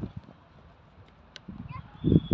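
A lull in a youth soccer match: faint shouts of children in the distance and a couple of light, sharp taps. Louder voices return near the end.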